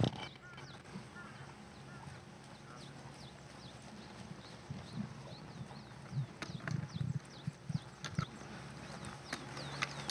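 Quiet outdoor ambience with faint birds chirping throughout in many short, high, downward calls. A few soft low thumps and murmurs come in around the middle.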